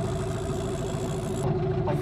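Small outboard motor idling steadily, a constant hum.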